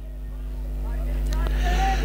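A steady engine hum, growing gradually louder, with a brief higher tone near the end.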